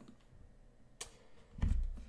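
A quiet room with a single computer mouse click about a second in, then a brief low hum-like sound near the end.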